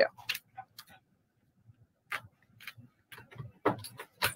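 A few faint, scattered clicks and light taps in a mostly quiet room, with no music playing.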